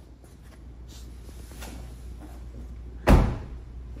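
A car door shut: a single heavy thump about three seconds in, after a few seconds of faint rustling and handling noise.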